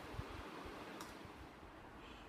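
Quiet room with a few faint low knocks and one light click about a second in: small objects being handled.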